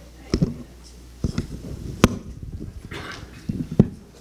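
Microphone handling noise: a few dull thumps and two sharp clicks, about a second apart, as a handheld microphone is moved and set back into its stand, over a low hum from the sound system.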